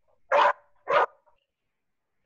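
A dog barking twice, two short sharp barks about half a second apart, heard over a video-call connection.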